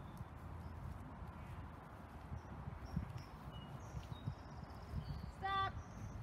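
Slow footsteps on bark mulch, a few soft thuds over a steady low rumble, with faint short bird chirps in the background. A brief voice sounds near the end.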